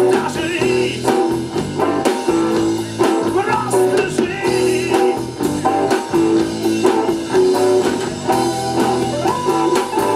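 Live rock band playing with electric guitar, bass guitar, keyboard and drum kit, the drums keeping a steady beat.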